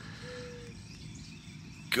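Quiet outdoor ambience: a low, even background hiss with faint, steady high-pitched insect sounds.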